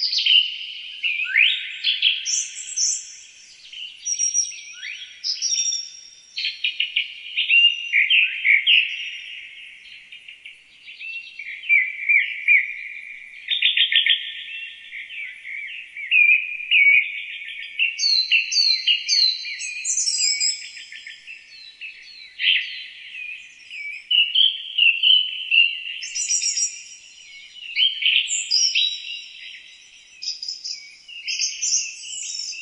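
Several songbirds singing at once without a break: high chirps, rapid trills and downward-sliding whistled phrases overlapping one another.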